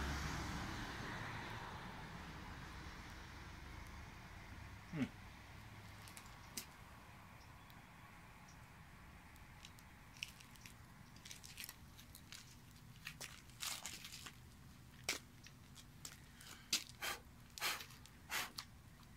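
Faint, scattered crackles and pops from a small gasoline fire burning around a pile of thermite in a frying pan, more frequent in the last few seconds. The crackling is probably the aluminum powder in the thermite, which is not igniting.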